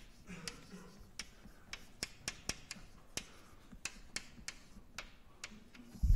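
Chalk writing on a blackboard: a string of sharp, irregular taps with short scratches as each letter is written.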